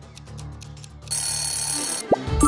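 Quiz countdown-timer sound effect over soft background music: light rapid ticks, then about a second in an alarm-clock bell rings steadily as the timer runs out.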